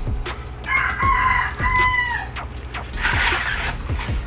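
A rooster crowing once, about a second in, over background music with a steady beat. A brief noisy rustle comes near the end.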